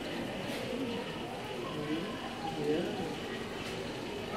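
Indistinct background chatter of several people talking, over a steady low hum.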